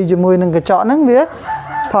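A man talking, then in the second half a drawn-out, steady call that is a rooster crowing.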